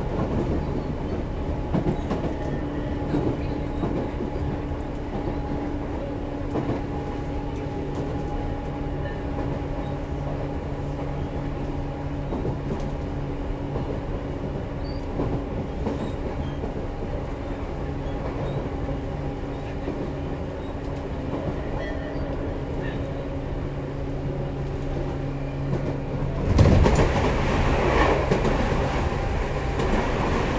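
Interior running sound of a Tobu 10030 series field-chopper electric train, recorded aboard a motor car: a steady hum at constant speed with wheels clicking over rail joints. About 26 seconds in, a sudden louder rush of noise comes in and stays.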